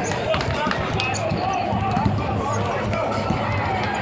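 Basketballs bouncing repeatedly on a hardwood court during warm-up layup lines, with voices of people talking in the arena.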